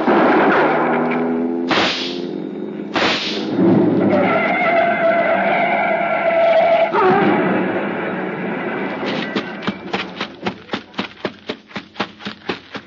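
Radio-drama sound effects under a dramatic music cue. Two gunshots about a second apart come near the start, with a car speeding away and crashing. Near the end there is a quick run of footsteps.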